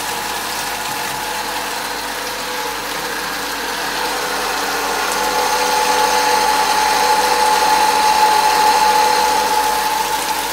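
Leo electric water pump running with a steady whine, growing louder from about five seconds in, over water pouring and splashing from a pipe into a fish pond.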